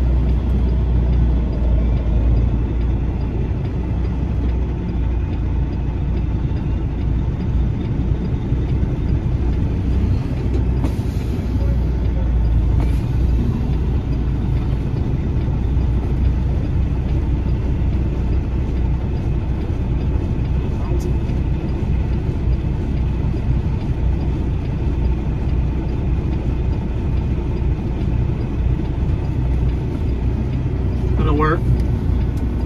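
Semi-truck engine running at low speed as the rig slowly manoeuvres, heard from inside the cab as a steady, loud low drone.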